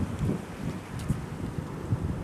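Wind buffeting the camera microphone outdoors: an irregular, gusty low rumble.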